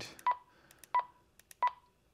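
Keypad beeps of an Ailunce HA2 handheld ham radio: three short, identical high beeps about two-thirds of a second apart as menu keys are pressed, with faint button clicks.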